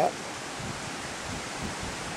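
Steady wind noise: a rushing hiss from wind moving through the trees, with low rumbling gusts on the microphone about halfway in.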